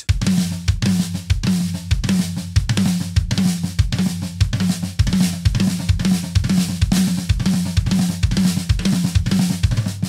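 Acoustic drum kit playing a repeating lick of closed flams around the snare and toms over the bass drum, in an even, steady rhythm of close-spaced strokes.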